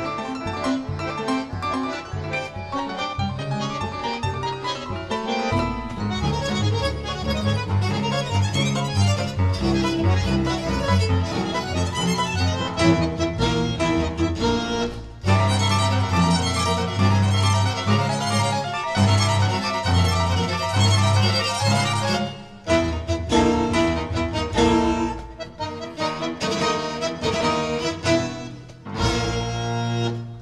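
Tango chamber quintet playing live: violin and cello bowing over piano, bandoneon and double bass. A heavy bass line comes in about five seconds in, and the music stops short for a moment about halfway through and again a few seconds later.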